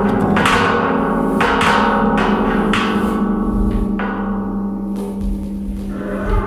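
Experimental improvisation on a large metal cauldron: a steady low metallic drone with irregular sharp hits every half second to a second, thinning out in the second half.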